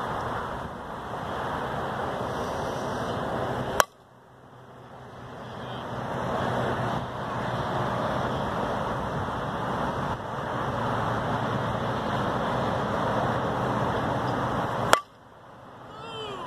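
Wind rushing on the microphone, broken twice by the sharp crack of a softball bat hitting the ball, about four seconds in and again near the end. After each crack the background drops away and slowly builds back up.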